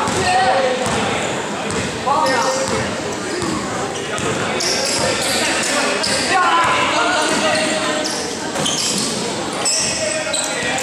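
A basketball being dribbled on an indoor gym court, with repeated bounces, over the voices and shouts of players and spectators.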